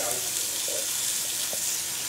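Pieces of lamb sizzling in a hot pan as they brown, a steady hiss.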